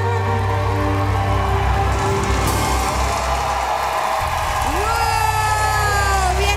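The last held note and orchestral backing of a sung ballad fade into a studio audience cheering and applauding, with a whooping voice rising about five seconds in.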